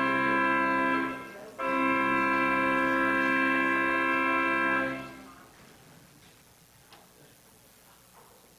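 Organ playing two long held chords, the second cut off about five seconds in and dying away in the room, followed by quiet room tone with a faint click.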